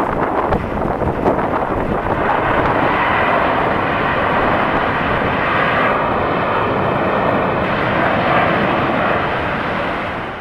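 Jet engines of a Boeing 737 airliner running steadily as it rolls along the runway. A faint high whine joins about six seconds in for a second and a half, and the sound fades near the end.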